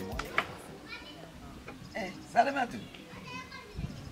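Children's voices calling out in short bursts in the background, the loudest a little past halfway, with one sharp click about half a second in.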